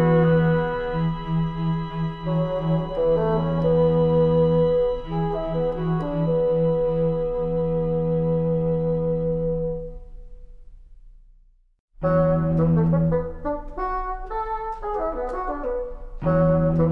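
Instrumental score music: sustained chords over a steady low note fade out about ten seconds in, and after a moment of silence a new section starts suddenly, with quicker, busier notes.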